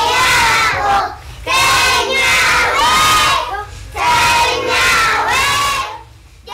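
A group of children's voices raised together in unison, in loud phrases about two seconds long with short breaks between them.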